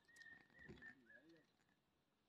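Very faint bird calls: a thin, steady high note that breaks up and fades out a little past halfway, and a low, wavering call about a second in.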